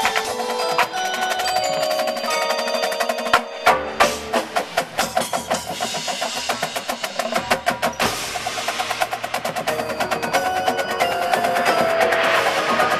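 Drum and bugle corps playing: the marching drumline drives fast, dense snare strokes and rolls over pitched front-ensemble mallet percussion and sustained tones.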